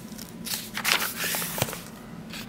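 A paper page of a picture book being turned by hand: a soft rustle and slide of paper, ending in a small tick as the page settles.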